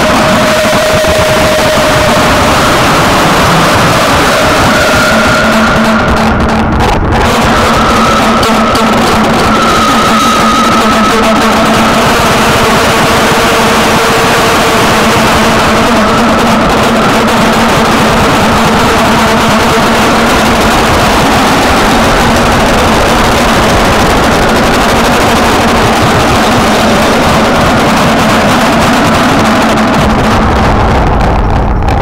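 Experimental sample-based harsh noise / power electronics: a loud, dense wall of distorted noise with a few faint held tones beneath it. The top end thins out briefly about six to seven seconds in.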